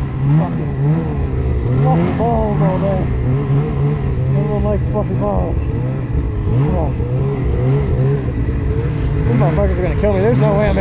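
Ski-Doo Summit 850 two-stroke snowmobile engine revving up and down over and over as the throttle is worked through deep powder.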